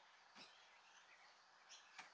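Near silence: faint outdoor background hiss, with a couple of very soft brief sounds.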